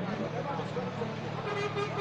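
Busy street traffic: a vehicle engine running steadily under people's voices, with a car horn sounding near the end.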